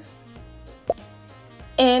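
Quiet background music with a single short pop sound effect about a second in, the kind used as a picture pops onto a slide. A woman's voice starts speaking near the end.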